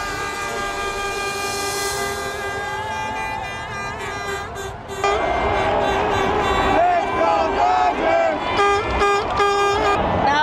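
Long held horn blasts over a street parade crowd. About halfway through it gets louder, with voices shouting and more horn blasts.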